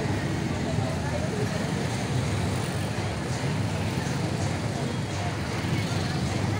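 Street din: many people talking in a marching crowd over the steady low rumble of motorcycle and car engines in slow traffic.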